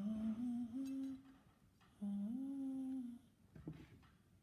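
A person humming a tune in two short phrases, each a few held notes stepping upward in pitch, with a short pause between them.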